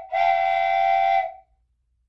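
A whistle sounding at one steady pitch: the end of one blast, a brief break, then a longer blast of just over a second that cuts off sharply.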